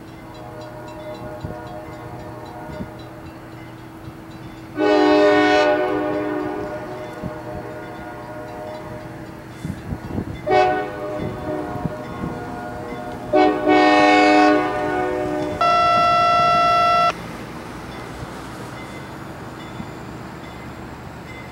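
The air horn of CSX road slug 2245 sounding three blasts for a grade crossing: long, short, long. It is followed at once by a steady tone of a different pitch lasting about a second and a half. Under it runs the low rumble of the slowly moving train.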